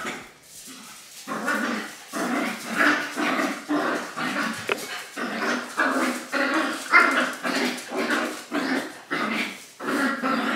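Two young dogs play-fighting, one making short vocal bursts about twice a second.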